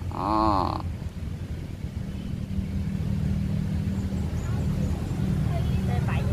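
A short, loud quavering call at the very start. From about two seconds in, a motor engine runs with a steady low hum.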